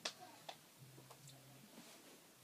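Near silence with a few faint, sharp clicks: one right at the start, another about half a second in, and softer ones after.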